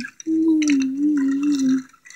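A girl's voice holding one long playful "weee" on a nearly steady pitch that wobbles slightly, a make-believe vehicle sound for a toy ambulance being pushed along.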